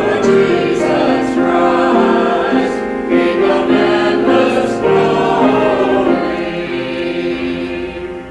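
Choir singing the Lenten Gospel acclamation in held chords, growing softer near the end.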